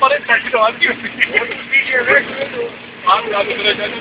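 People talking inside a moving van, with the vehicle's steady running noise underneath.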